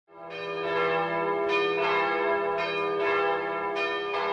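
Bells ringing: a slow, irregular run of struck tones, each one ringing on into the next over a steady low hum.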